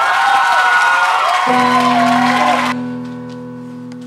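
Audience applauding and cheering with high-pitched whoops as a song ends. The applause stops abruptly about three seconds in, while a low held note from the accompaniment sounds from about halfway through.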